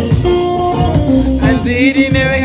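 A woman singing into a microphone over amplified backing music with a steady beat.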